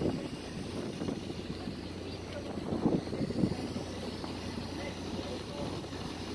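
Steady low hum of a passenger boat's engine, with wind buffeting the microphone in gusts, the strongest about three seconds in.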